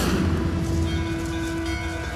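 A bell ringing on after a strike, several held tones sounding together over a low rumble, the lowest and loudest tone fading out near the end.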